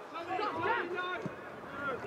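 People talking, the words indistinct. Nothing else stands out.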